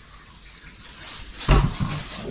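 Clear plastic bags of breadcrumbs being handled and opened, a faint crinkling hiss, with a louder burst of sound about one and a half seconds in.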